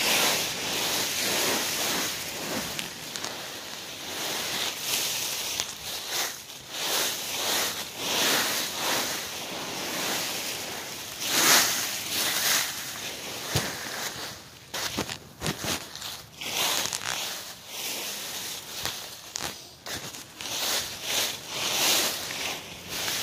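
Dry fallen leaves rustling and crunching in a leaf pile, in irregular bursts close to the microphone as someone moves through and stirs the leaves.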